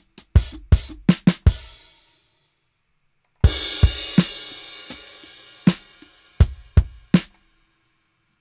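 EZdrummer 3 virtual drum kit playing auditioned MIDI groove suggestions, drums alone: a few kick and snare hits that stop about two seconds in. After a short gap a new pattern starts with a cymbal crash that rings out under more kick and snare hits, cut off shortly before the end.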